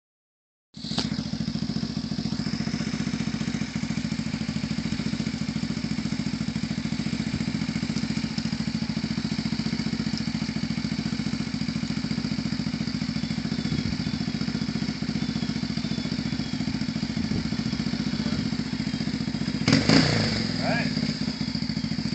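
Yamaha Warrior ATV's single-cylinder four-stroke engine idling steadily, with a louder, busier stretch near the end.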